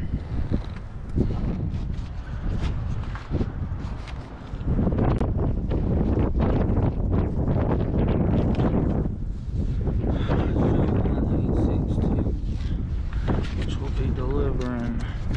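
Wind buffeting the microphone outdoors, a dense low rumble that comes in about five seconds in and carries on. It is preceded by a few scattered handling clicks.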